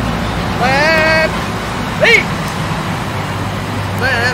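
A sheep bleating once, a call that rises then holds. About a second later comes a brief, sharp high-pitched squeal that falls steeply. A steady low rumble runs underneath.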